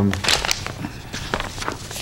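Papers rustling and small objects knocking on a meeting table near the microphones: a string of short clicks and rustles.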